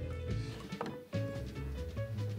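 Background music with held melody notes over a changing bass line, and a faint short knock a little before the middle.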